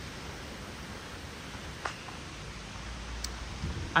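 Steady outdoor background hiss with a low rumble that grows slightly near the end, and one faint click a little under two seconds in.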